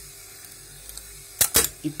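1978 Cadillac Eldorado windshield wiper motor running steadily on a bench in fast mode, then two sharp mechanical clicks from the mechanism in quick succession about a second and a half in.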